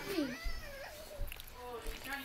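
High-pitched, drawn-out vocal calls whose pitch glides down and then arches up and down in the first second, with fainter vocal sounds after.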